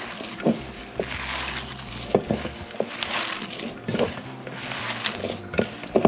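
Hands squeezing and kneading chopped raw spinach and grated cheese in a glass bowl: a continuous moist rustling, with a few short knocks of fingers against the bowl.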